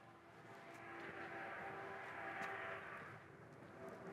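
Faint, distant engine noise that swells and then fades over about three seconds, as a vehicle passes at a distance.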